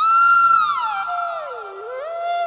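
Instrumental melody: a loud high note that starts suddenly and is held for about half a second, then slides down more than an octave and climbs partly back up near the end.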